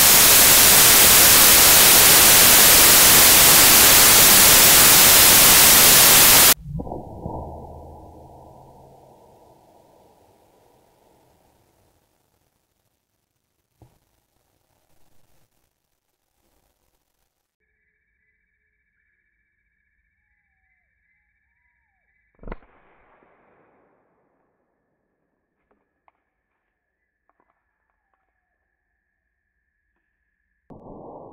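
Loud, steady static hiss that cuts off suddenly after about six seconds, giving way to a quieter low rush that fades away over several seconds. Later there is a single thump.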